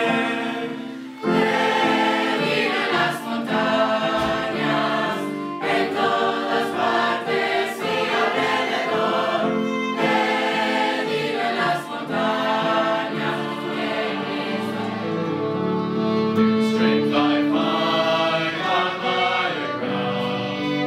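A mixed youth choir of teenage boys and girls singing sacred music together in parts, with short pauses between phrases.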